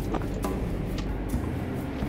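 A vehicle's steady low road and engine rumble heard from inside the cabin while driving, with background music.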